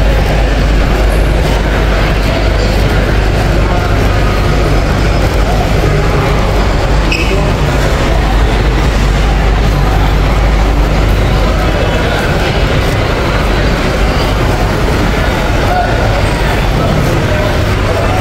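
Busy airport terminal ambience heard while walking: a steady low rumble under background voices and chatter of people around.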